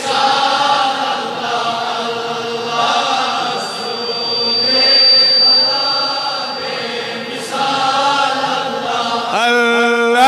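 A congregation chanting together in long, drawn-out notes, with a thin steady high whistle for a few seconds in the middle. About a second before the end, a single voice begins a melodic recitation with a wavering pitch.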